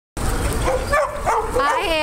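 A few short, high yips and whines from dogs in a group of boxers, then a person's high, sing-song voice starting a greeting near the end.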